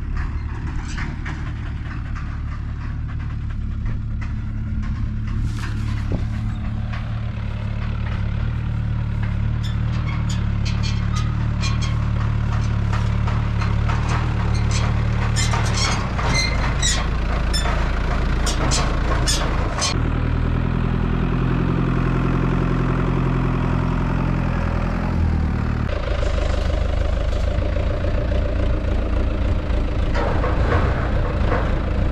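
Front-loader tractor engine running steadily, its pitch shifting a few times. A run of sharp metallic clanks and rattles comes in the middle.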